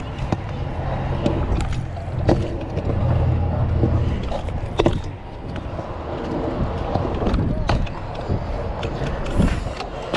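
Pro scooter wheels rolling over concrete, a steady rumble with a few sharp clacks as the wheels and deck hit cracks and joints.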